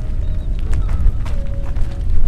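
Wind buffeting the microphone as a steady low rumble, with a few faint clicks about a second in.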